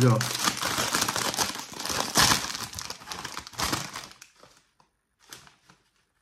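A plastic chip bag being pulled open by hand: crinkling throughout, with one sharp tear a little after two seconds in, and the crinkling dies away by about four seconds.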